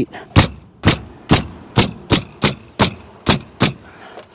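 Pneumatic nail gun firing nine nails in quick succession, about two a second, through metal valley flashing into the roof deck.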